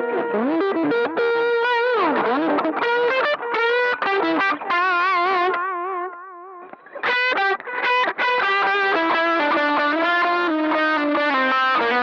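Electric guitar played through a pedalboard with a distorted tone: single-note lead lines with string bends and wide vibrato, a short break about six seconds in, then more notes.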